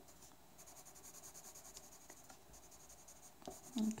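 Faint scratching of a coloured pencil shading on paper in quick, repeated strokes.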